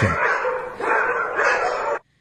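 A dog vocalising continuously for about two seconds, then cut off abruptly.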